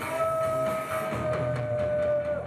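Punk rock band playing live, with drums, bass and electric guitar, and one long held high note sustained through nearly the whole stretch.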